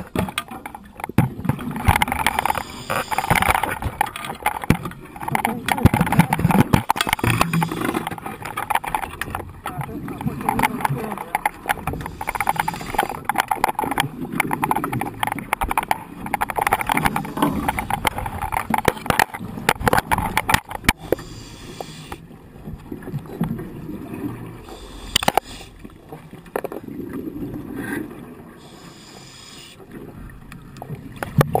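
Scuba diver breathing through a regulator underwater: a gurgle of exhaled bubbles rises and fades every three to four seconds, with scattered sharp clicks and knocks. It turns quieter about two-thirds of the way through, and a single louder knock follows a few seconds later.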